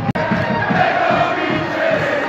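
Football ultras singing a chant together, a massed crowd of voices holding long notes. There is a momentary break in the sound just after the start.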